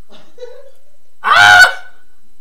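A single loud honk, about half a second long, a little past halfway through.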